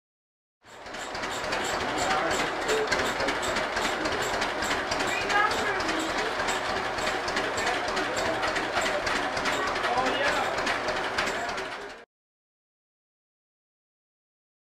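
Sawmill's engine running at a steady idle with an even beat of three or four strokes a second, and people talking over it. It cuts in just under a second in and cuts off abruptly about two seconds before the end.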